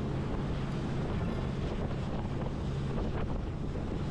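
Wind rushing over the microphone on a moving small boat, with the low, steady drone of the boat's engine underneath.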